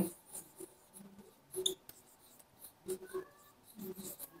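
Faint, intermittent strokes of a marker pen writing and drawing on a board, a few short scratches about a second apart.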